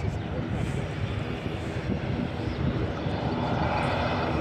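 Airbus A320 jet engines rumbling as the airliner rolls out on the runway after landing. The engine noise swells near the end.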